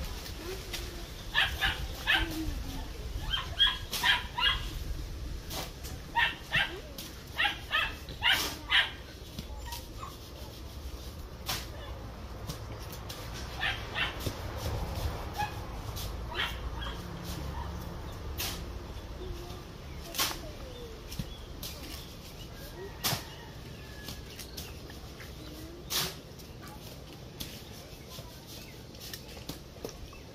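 A dog barking in repeated short bursts, most of them in the first nine seconds or so. Scattered sharp clicks of a knife working through green banana peel run under it.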